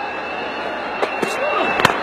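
Steady stadium crowd noise, with one sharp crack near the end: a cricket bat striking the ball for a boundary shot.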